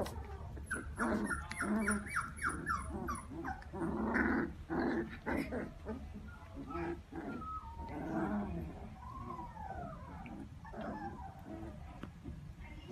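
Two puppies play-fighting, giving small growls and a quick run of short yips, then higher whining calls that slide up and down in pitch.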